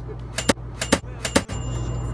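Six sharp clicks in three close pairs, about a second and a half in all, with a faint high steady tone in the second half.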